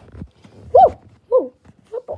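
A child's voice making two short wordless cries, each sliding up and back down in pitch, about half a second apart.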